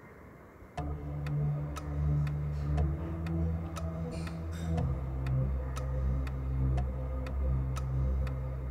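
Clock-ticking countdown sound effect for quiz thinking time: sharp ticks about twice a second over a low, sustained drone. It starts about a second in, and the drone shifts pitch about halfway through.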